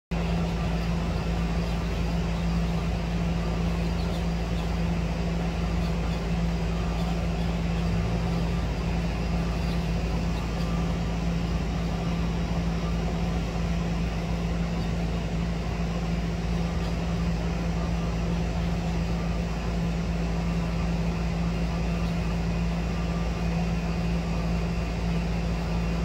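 Steady mechanical hum: one constant low tone over an even hiss that does not change.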